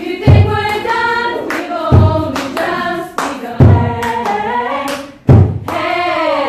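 Women's choir singing in several parts over a slow drum beat: a deep drum hit about every second and a half, four in all, with hand claps in between.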